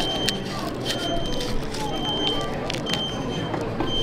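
Plastic spork cutting into a crumbly apple crumble tart on a paper plate, making a few light clicks and scrapes. Under it run background chatter and a short high electronic beep repeating about once a second.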